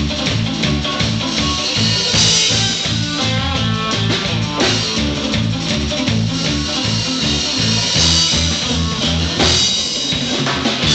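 A live surf-rock instrumental played by a three-piece band: electric lead guitar over a steady repeating electric bass line and a drum kit.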